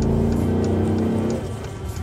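Mercedes-AMG GLS 63's twin-turbo V8 exhaust heard from inside the cabin under acceleration, a steady engine note that drops away about a second and a half in.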